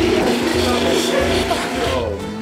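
Countertop blender running at speed, blending soaked cashews and water into cashew milk, with background music underneath. The blender noise runs on steadily and fades about a second and a half in.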